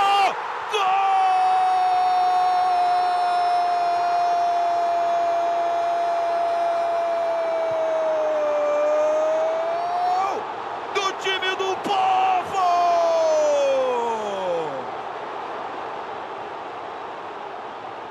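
A TV football commentator's drawn-out goal call, one long held shout of "gol" lasting about nine seconds, followed by a few short shouts and a long call that falls sharply in pitch and dies away about 15 seconds in. Stadium crowd noise runs underneath, going on more quietly after the shouting stops.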